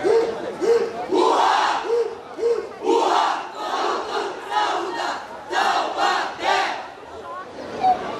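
A group of voices shouting a rhythmic chant in unison. It starts as short calls about two a second, then turns to longer, louder shouts.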